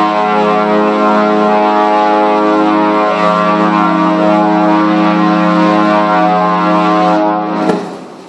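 A cruise ship's horn sounding one long, steady blast that cuts off near the end.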